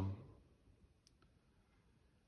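Near silence, with two faint clicks about a second in; a man's reading voice fades out at the very start.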